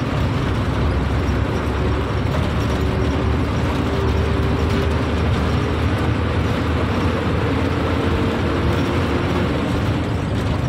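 Bus engine and road noise heard inside the cabin of a moving bus: a steady rumble with a faint whine through the middle.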